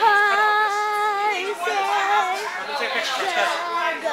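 A child singing in a high voice, holding long, slightly wavering notes, then shorter changing ones.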